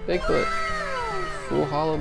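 A high-pitched, drawn-out vocal call that slides down in pitch over about a second, then a shorter wavering call near the end, over 8-bit lofi background music.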